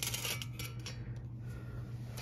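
Small metal pocket tape measure handled against an aluminium intake manifold: a few light metallic clicks and rattles in the first second, then softer handling, over a steady low hum.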